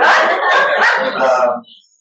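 Laughter, loud and continuous, breaking off about a second and a half in.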